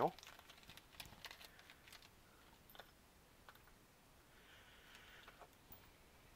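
Faint crinkling of a small clear plastic parts bag being handled and emptied, with a few light clicks as small metal parts (a ball bearing, washers and O-rings) drop onto the table.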